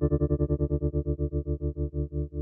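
A sustained electric keyboard chord pulsing on and off through a tremolo effect, about a dozen pulses a second, the pulsing slowing gradually as the rate is turned down.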